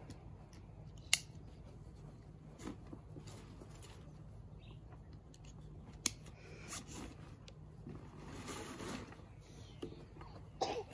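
Bushbuck Destroyer hunting pack being handled, its straps and fittings pulled and worked: two sharp clicks, about a second in and about six seconds in, with a few softer knocks between and a longer rustle near the end.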